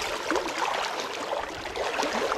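Shallow water sloshing and splashing around a person's legs as he wades, a steady watery noise with no distinct loud splashes.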